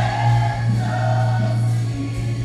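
Gospel choir singing a worship chorus with band accompaniment, over a steady low note held underneath.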